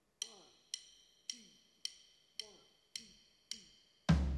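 Drumsticks clicked together in a count-in: seven faint, even clicks about half a second apart, each with a short woody ring, setting the tempo for the song.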